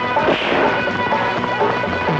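Dramatic action-film background score with crashing impact sound effects mixed over it.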